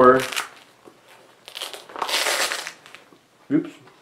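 Rustling and scraping of a nylon MOLLE first-aid pouch and its webbing being handled, one burst lasting about a second in the middle.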